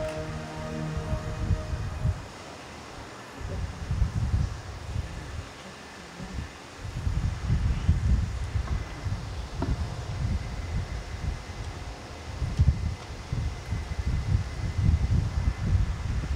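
A sung hymn note fades out in the first second, then low, uneven rumbling of air buffeting the microphone.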